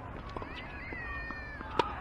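A tennis racket strikes the ball with one sharp pop near the end, the loudest sound. Before it, tennis shoes squeak on the hard court as the player moves into the shot.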